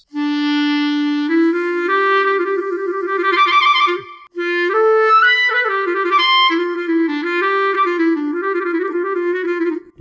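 SWAM Clarinet virtual instrument played live in mono mode from an Akai electronic wind controller: a legato clarinet melody, one note at a time, opening on a long held low note and moving through a phrase with vibrato on some notes. It breaks off briefly about four seconds in, then a second, higher-reaching phrase runs on.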